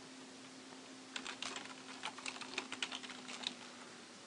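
Typing on a computer keyboard: a quick run of about a dozen keystrokes between about one and three and a half seconds in, over a faint steady hum.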